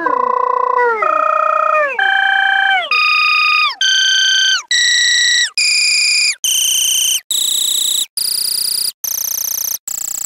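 A short computer sound played from a Scratch project, repeated about once a second, with each repeat pitched higher than the last. Each note holds, then slides down at its end, and the run climbs until it is very high and thin near the end, with short gaps between the notes in the second half.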